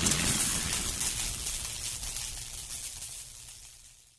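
Decaying tail of a heavy hit in an end-screen outro sound effect: a hissy wash over a low rumble, fading steadily away and dying out at the end.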